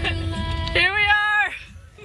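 A voice singing two long held notes, the second a little higher than the first, over low car-cabin rumble; the singing stops about a second and a half in.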